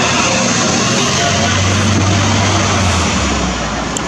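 Street traffic noise: a motor vehicle's engine running close by, a steady low hum that drops lower about three seconds in.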